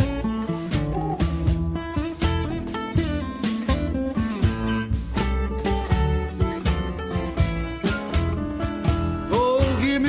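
Acoustic blues instrumental break: acoustic guitar playing lead lines over a rhythm guitar and a steady beat. A voice comes in singing near the end.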